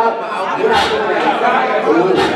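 Loud chatter of several voices talking over one another, with a man speaking into a microphone.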